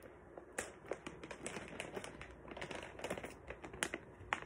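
Plastic treat pouch crinkling and rustling as it is handled, in quick irregular crackles and clicks that grow busier near the end.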